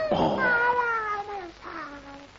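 A high, wordless, meow-like cartoon voice: one long call sliding slowly down in pitch, then a shorter call near the end.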